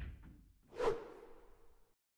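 Animated logo sound effect: a single whoosh a little under a second in, leaving a short ringing tone that fades away.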